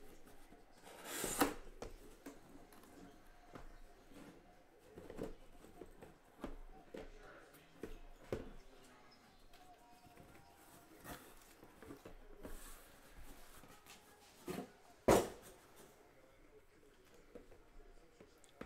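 Handling of a cardboard case and the small shrink-wrapped boxes of trading cards inside: the case flaps opened and the boxes lifted out and set down in a stack, giving scattered light knocks and rustles. A rustling scrape comes about a second in, and the sharpest knock about fifteen seconds in.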